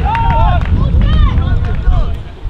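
Voices shouting at an outdoor football match: several short calls that rise and fall in pitch, over a steady low rumble.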